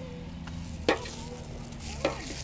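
Stir-frying in a large metal pan: noodles, shrimp and greens sizzling as metal spatulas toss them, with one sharp clank of spatula against the pan about a second in.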